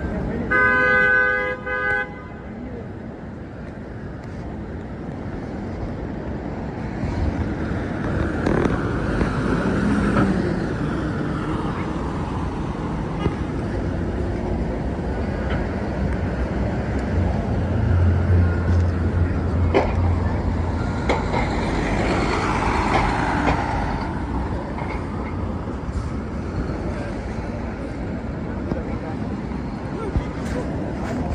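A vehicle horn honks about half a second in, held for over a second with a brief break, over steady city street traffic. Vehicles pass in the traffic noise, which swells twice, around ten seconds in and again past twenty seconds, and a low engine hum sits under it for a few seconds near the middle.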